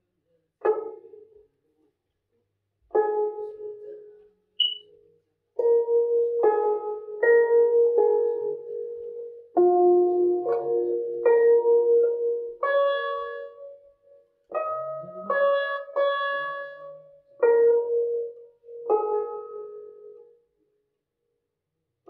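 Guzheng (Chinese zither) plucked note by note in a beginner's practice: single notes and short runs, each ringing out and fading, with irregular pauses between phrases.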